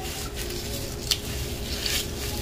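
Faint rustling of dried thyme sprigs as gloved fingers strip the leaves into a plastic blender jar, with a brief crackle about a second in. A faint steady hum lies underneath.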